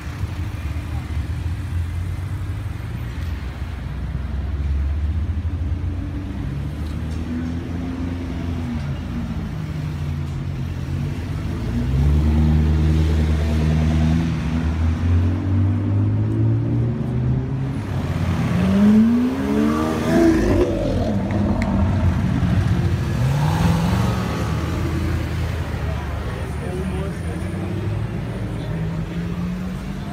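Red Jaguar F-Type sports car's engine running and revving through the gears as it pulls away, its pitch rising and falling repeatedly, with the sharpest climbing revs about two-thirds of the way through.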